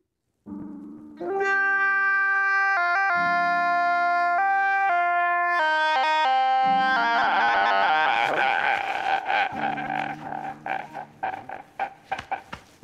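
A man's loud crying wail run through autotune, so that it sits on held musical notes that jump abruptly from pitch to pitch. From about seven seconds in the wail turns rougher and breaks up into choppy sobs on lower notes.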